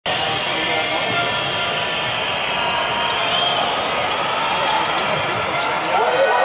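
Basketball being dribbled on a hardwood court over steady arena crowd noise, with a short high squeak about three seconds in.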